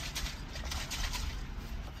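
A bottle of Adam's Brilliant Glaze glass polish being shaken by hand in quick even strokes, about six a second, dying away about a second and a half in.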